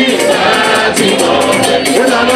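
A church group singing gospel music through microphones, several voices together, over a steady rhythm of shaker-like percussion.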